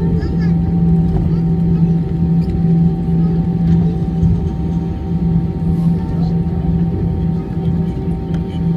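Cabin noise of an Airbus A319-111 rolling out on the runway after touchdown: the steady low rumble of its CFM56 engines and the wheels on the runway, with a humming tone that wavers in strength.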